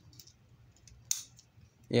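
Plastic Bakugan figure's hinged parts being pressed shut by hand, with faint clicks and one short, sharp snap about a second in. It is too hard of a click, the sign that the parts are being folded in the wrong order.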